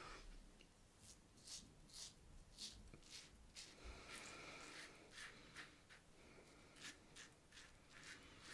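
Leaf Thorn razor, fitted with a half Permasharp double-edge blade, scraping through lathered stubble on the cheek in short, faint strokes, about a dozen of them, with a longer scrape about four seconds in.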